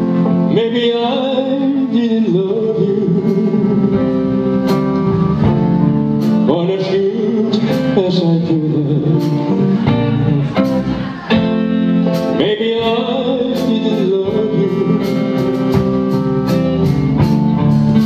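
Live band playing, with acoustic and electric guitars, keyboards and drums under a male lead vocal.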